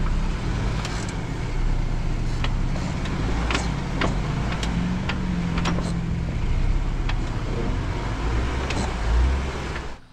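Jeep Rubicon crawling slowly over bare rock: a low, steady engine rumble that rises briefly in pitch about halfway through, with scattered sharp clicks and cracks from the tyres on the rock.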